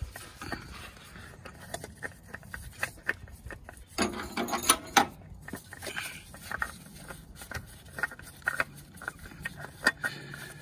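Gloved hands screwing a new oil filter onto its mount by hand: scattered small clicks and scrapes, with a louder rustling scrape about four seconds in that lasts about a second.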